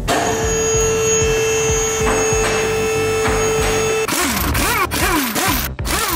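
Impact wrench with a 19 mm wheel socket working on the wheel nuts: a steady whine that starts abruptly and holds for about four seconds, then shorter, choppier bursts, over background music with a beat.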